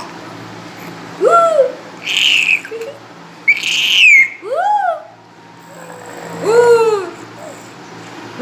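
Six-month-old baby cooing and squealing playfully in short rising-and-falling calls. Two shrill high squeals come about two and three and a half seconds in.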